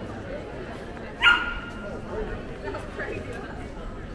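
A small dog barking once, a single short, sharp bark about a second in, over the murmur of people talking.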